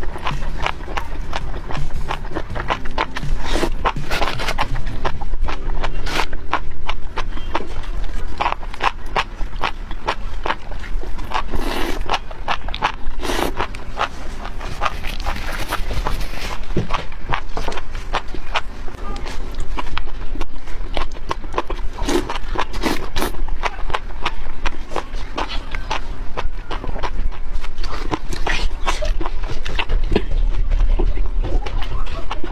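Wet slurping and chewing of enoki mushrooms in chilli oil sauce, with many sharp clicks and smacks, over steady background music.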